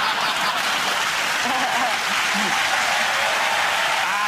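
Studio audience applauding and laughing, a steady dense clatter of hands with a few voices mixed in.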